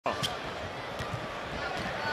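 A basketball being dribbled on a hardwood court, a few bounces about two a second, with steady arena crowd noise underneath.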